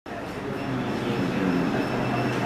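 A man's voice holding one long, drawn-out sound.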